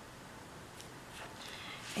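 Faint rustling of paper sticker sheets being handled, a few soft rustles in the second half, over steady room hiss.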